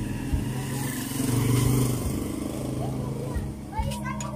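Motorcycle engine of a tricycle running on the road, heard from inside the sidecar as a steady low hum that grows a little louder about a second in.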